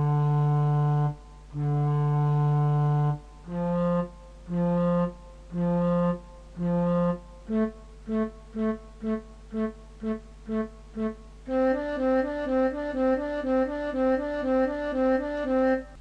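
Note-value demonstration played on a single wind-like instrument tone. First two long notes, then four, then eight, then sixteen short repeated notes. Each group takes about the same time and sits a step higher in pitch, sounding out that a whole note equals two half notes, four quarters, eight eighths and sixteen sixteenths.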